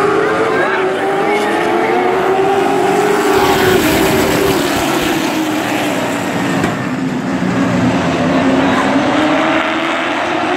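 Pack of Sportsman stock cars racing on a short oval, their engines rising in pitch as the cars come through, falling away about four seconds in, then rising again near the end as they come around once more.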